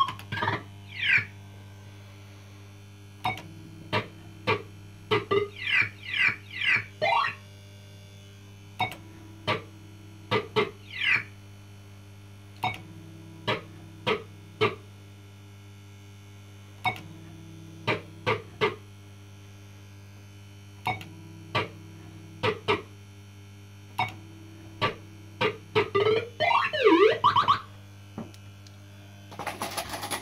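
PCP Blankity Bank fruit machine on the System 80 platform playing its electronic sound effects: a long run of short beeps and quick rising and falling tone sweeps with sharp clicks, over a steady low mains hum. Near the end comes a fast flurry of sweeping tones, then a clatter right at the end.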